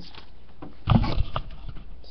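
A quick cluster of knocks and dull thuds about a second in: the camera being handled and bumped against the table as it is moved.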